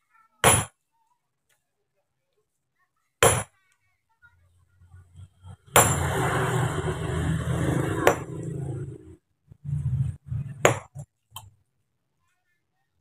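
Sledgehammers striking stone blocks being split by hand: five sharp clinks about two and a half seconds apart. After the third strike comes a rough, noisy rumble lasting about three seconds.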